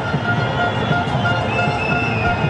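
Music playing over the steady, dense noise of a stadium crowd at a cricket match, with held tones running through it.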